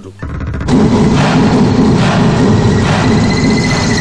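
Loud, dramatic film background score swelling in: a dense rumbling wash of sound with a thin high tone coming in about halfway through.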